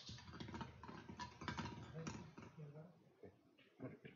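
Small plastic draw balls clicking and clattering against each other and the glass bowl as they are stirred by hand. The clicks come thick and fast for about two and a half seconds, some with a short glassy ring, then thin out to a few scattered clicks.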